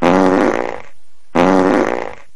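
Two loud, pitched fart sounds, each just under a second long, the second coming a little over a second after the first.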